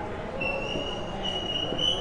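Felt-tip marker squeaking on a whiteboard as small dots are drawn: a thin, high squeal that starts about half a second in and holds on, stepping slightly up in pitch about halfway through.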